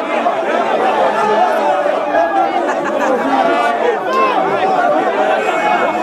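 Dense crowd chatter: many voices talking at once in a steady, loud babble.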